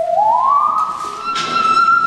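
Musical saw played with a bow: one sustained, pure, singing note that slides smoothly up about an octave just after the start and then holds.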